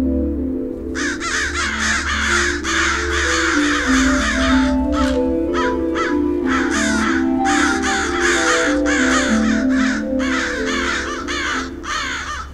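A flock of crows cawing over and over, many calls overlapping, starting about a second in with brief lulls near the middle, over slow, moody background music of sustained low notes.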